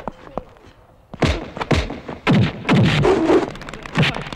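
Film fight sound effects: after a quiet second, a rapid run of punch-and-thud impacts, each dropping in pitch as it lands.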